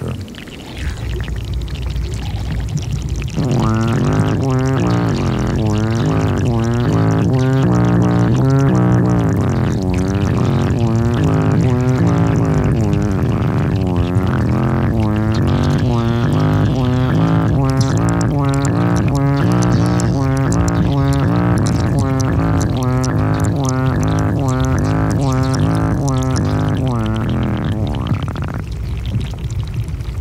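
Underwater recording of meltwater inside a glacier crevasse: a deep, pitched gurgling that pulses about twice a second over a low drone. It starts a few seconds in and stops near the end.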